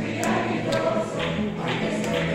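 A plucked-string orchestra of guitars and lutes playing a tune in steady, sustained notes.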